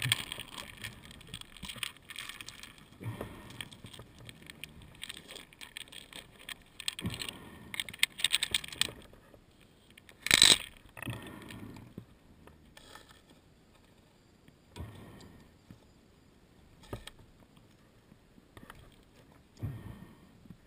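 Intermittent small clinks, rattles and scrapes of metal gear being handled, with a short loud burst of hiss about ten seconds in, then only occasional knocks.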